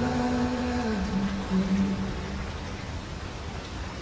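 Recorded rain sound effect, a steady hiss of rainfall, under the last held note of a slowed, reverb-heavy pop song, which fades out in the first second or two.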